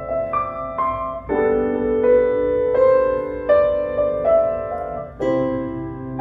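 Grand piano played in chords, each struck chord ringing and fading before the next, roughly one a second, with fuller, louder chords about a second in and near the end.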